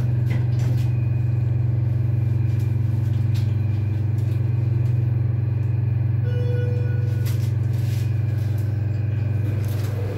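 Schindler elevator car interior with a loud, steady low hum as the car travels down one floor. A short electronic beep about six seconds in, as the display reaches B1, marks the car's arrival, followed by a few light clicks as the doors begin to open.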